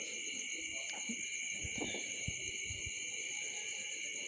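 Steady high-pitched chirring in several even tones, typical of insects in the background, with a few faint low knocks.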